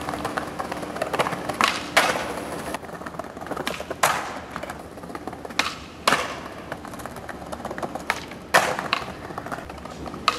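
Skateboard wheels rolling over stone paving tiles, broken by about seven sharp clacks of the board popping and landing on flatground tricks, several of them in quick pairs.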